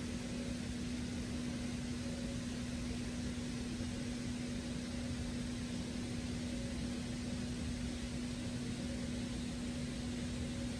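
A steady mechanical hum: one constant low tone over an even hiss, unchanging throughout.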